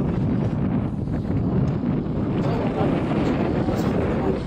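Wind buffeting the camera's microphone: a steady low noise.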